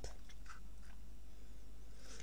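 Low, steady background hiss of a small room, with a few faint soft sounds about half a second in.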